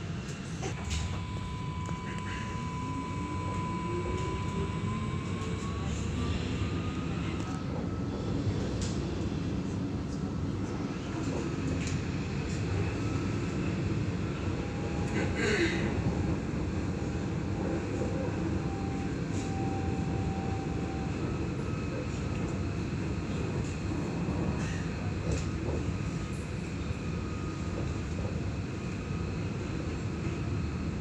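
Interior of an Alstom Citadis X05 light rail tram running along its track: a steady low rumble of wheels on rail, with the electric traction drive whining and rising in pitch as the tram picks up speed over the first several seconds. A short sharp knock is heard about halfway through.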